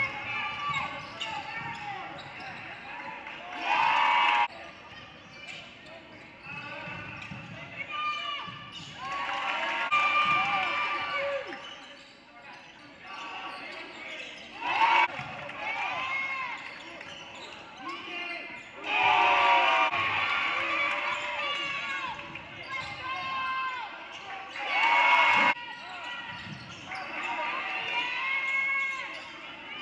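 Live game sound in a gymnasium: a basketball being dribbled on the hardwood court under players' and spectators' shouting. Several short louder bursts of crowd noise come through.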